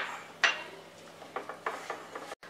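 A single clink with a short ring on a glass mixing bowl about half a second in, followed by a few faint knocks and rubbing as a hand mixes flour, fenugreek leaves and curd in the bowl.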